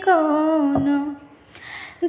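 A woman's unaccompanied singing voice holding one long note that falls in pitch and fades out about a second in, followed by a short soft hiss before the next line.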